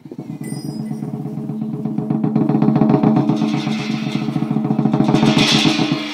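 Chinese lion dance drum beaten in a fast roll that starts suddenly and builds in loudness, with cymbals coming in as it swells toward the end.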